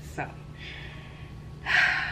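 A woman drawing a soft breath in and then letting out a louder, breathy sigh near the end, a sigh of tiredness from someone who calls herself exhausted.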